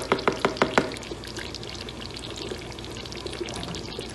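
Thick tomato stew simmering in a pot, bubbling and plopping steadily. In the first second a quick run of about six sharp knocks from the ladle against the pot.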